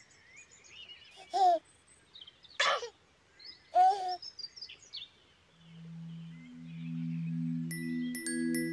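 A baby giggling three times, in short bursts about a second apart, over steady birdsong. From about two-thirds of the way through, low sustained music notes come in, and high chime notes join them near the end.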